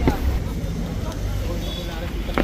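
Busy street ambience: voices of a crowd walking by over the steady rumble of vehicle traffic, with a short sharp knock right at the start.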